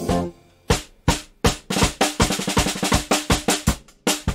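A drum kit playing a fill. Three spaced strikes come about a second in, then a faster run of snare and bass drum hits from about halfway through.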